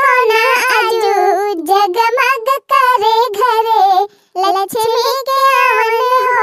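A high-pitched female voice singing a folk badhai geet (congratulation song for a daughter's birthday) unaccompanied, in long held, wavering notes with brief breaths between phrases.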